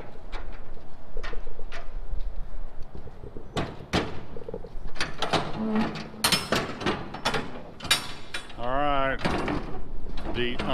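Steel locking-bar handles and cam latches on a shipping container's doors being worked loose: a run of sharp metallic clanks, knocks and rattles, busiest in the middle of the stretch.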